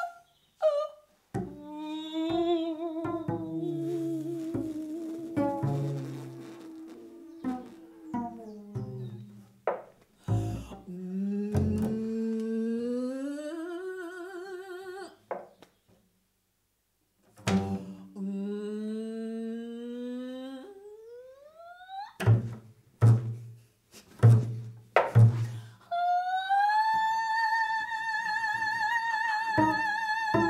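Free improvisation for a woman's voice and double bass: sliding, wavering vocal lines over low plucked bass notes and sharp knocks, with about two seconds of silence halfway through. Near the end the voice holds one high note with vibrato.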